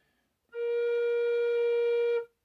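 Generation tin whistle, trimmed from B-flat to B, sounding one long steady note that begins about half a second in. With its head pulled out to the lowest tuning the note sits only just above B-flat.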